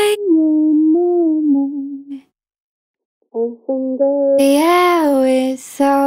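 A solo female lead vocal, unaccompanied, sings a slow, held pop line ('oh I know that you're not mine'). The line breaks off for about a second midway, then the singing resumes. The vocal is playing through an EQ that cuts some of its low mids because they were popping out too much.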